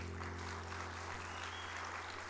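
Audience applauding, with the last strummed acoustic guitar chord dying away underneath.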